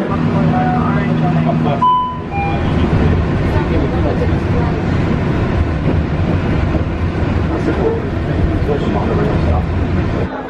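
Walt Disney World monorail train: a steady low hum while it stands at the platform, then, after about two seconds, a steady low rumble as it runs along the elevated track, heard from inside the car.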